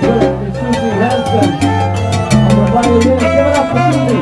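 Live salsa band playing, with a moving bass line, frequent percussion strikes and horn and keyboard parts over it.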